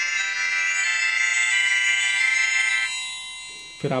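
V8 smart watch playing its power-off tune through its small speaker: an electronic ringtone-like melody of several steady notes that ends and fades out about three seconds in.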